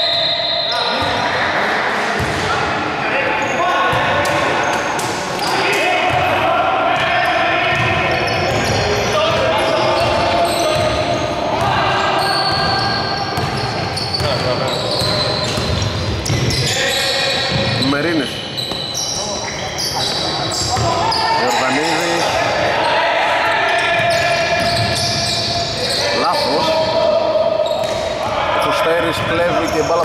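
Basketball game sounds in a large, echoing indoor hall: the ball bouncing on the court among voices on and around the court.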